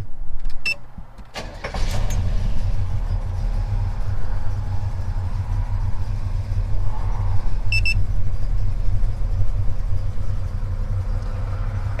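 1977 Chevy C10's engine with a lumpy cam idling low and unevenly, at about 600 rpm. The owner traced this dragged-down idle to the A/C compressor clutch loading the engine.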